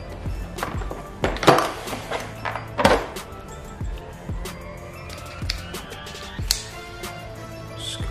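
Background music, with a few sharp knocks and clicks of small tools being handled: a bit is taken from a plastic accessory case and fitted into a handheld rotary tool. The loudest knocks come about one and a half and three seconds in.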